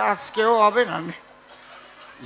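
A man's voice through a stage microphone: a short, drawn-out spoken phrase for about the first second, then a pause.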